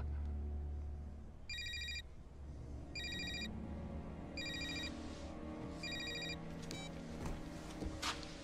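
A phone ringing with an electronic trilling ring, four rings about a second and a half apart, over a low sustained film-score drone.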